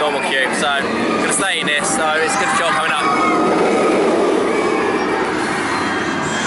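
Steel roller coaster train running along its track, a steady rumble that builds about halfway in, after a few seconds of voices.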